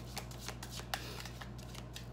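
A deck of tarot cards shuffled by hand, a quick, irregular run of soft card flicks and slaps.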